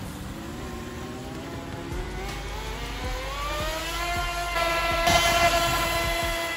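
Miniwerft Kaiser K 500 1:6 scale radio-controlled model jetboat running on the water, its motor whine rising steadily in pitch from about two seconds in and at its loudest near the end.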